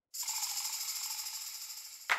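A dense rattling hiss starts abruptly from silence and slowly fades, the opening sound of the song.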